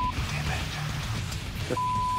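A censor bleep, a steady pure beep tone, sounds briefly at the start and again near the end, over a background music bed with a repeating low bass line.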